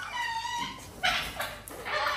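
A kitten mewing once, a single high, steady call of about half a second, followed about a second in by a brief rustle of cardboard.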